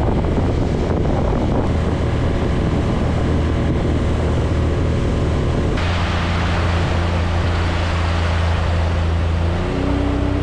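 Outboard motor running steadily at speed as a small boat moves under way, with wind on the microphone and water rushing past the hull. About halfway through the hiss turns brighter.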